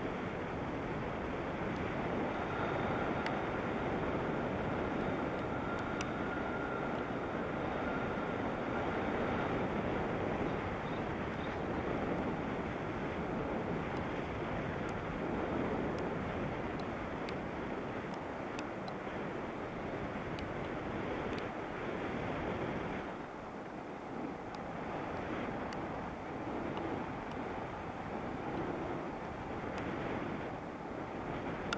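Steady rush of wind over the microphone in paraglider flight, easing a little about 23 seconds in. A faint high steady tone sits under it for several seconds near the start, and there are a few faint ticks.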